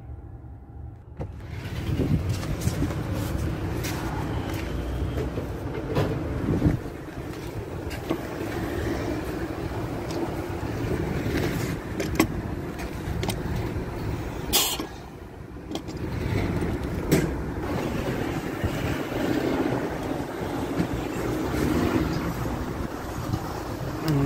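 Steady noise at an LPG filling station, with several sharp metallic clicks and knocks as the propane filler nozzle is handled and fitted to the car's gas inlet.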